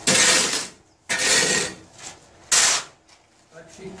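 Steel shovel scraping across a concrete floor and turning over a dry pile of sand and cement, three strokes about a second apart. The dry mix is being blended evenly before water goes in.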